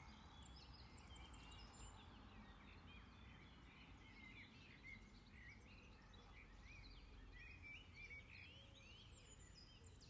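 Faint songbirds: several birds chirping and trilling, with short high calls repeating all through, over a quiet low background hum.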